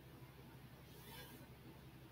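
Near silence: room tone with a steady low hum, and a faint brief swish about a second in.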